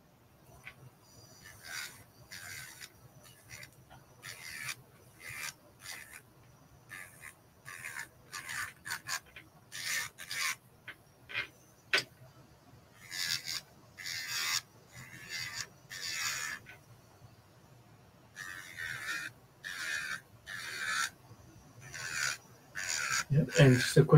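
Electric nail file (e-file) running with a faint steady hum while its white bit files a gel extension nail at the cuticle in short repeated scraping strokes, about one or two a second.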